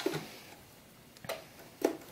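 Brother SE-400 computerized sewing machine being switched on: a couple of short soft clicks in the second half as its mechanism moves on start-up.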